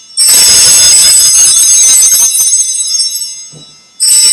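Altar bells rung at the elevation of the chalice, signalling the consecration of the wine. A bright, high ring begins a moment in and dies away over about three seconds, and the next ring starts right at the end.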